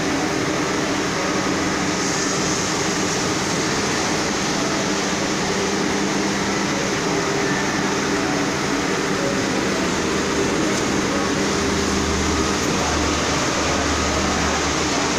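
Irizar i6 coach's diesel engine running at a steady idle, an even hum with no revving.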